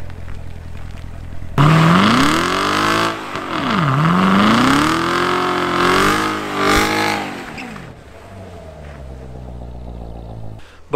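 A 2016 Corvette Z06's supercharged V8 idling, then about a second and a half in revving hard, its pitch rising and falling several times as it spins the rear tires in a smoking burnout, and dropping back to idle near the end.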